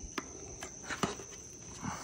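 A few light clicks and taps of a screwdriver against the metal propeller flange as a rubber oil seal is worked over it, over a steady high-pitched whine.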